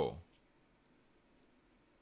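The last word of a man's sentence trailing off, then near silence with one or two faint tiny clicks.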